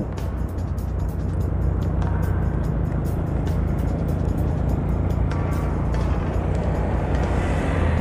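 Steady low drone of a motorcycle being ridden, its engine and rushing air running evenly, with background music over it.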